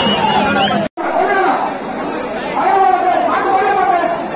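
A large crowd of men shouting and chattering at once. The sound drops out for an instant about a second in.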